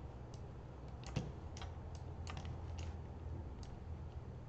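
Sparse, irregular clicks of computer input, about eight in four seconds, over a faint steady low hum.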